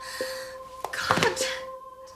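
A woman's distressed wail: a breathy intake, then about a second in a single cry that falls sharply in pitch.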